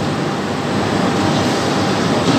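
Steady mechanical background noise, like a running fan or machinery, with no distinct knocks or clicks.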